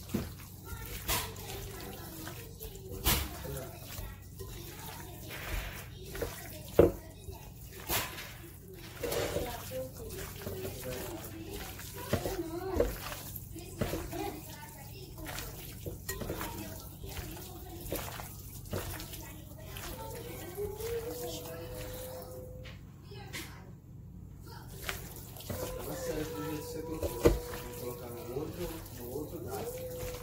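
Wet squelching of raw, seasoned chicken breast pieces being mixed by hand in a glass bowl, with frequent small clicks and a few sharper knocks, the loudest about seven seconds in and near the end.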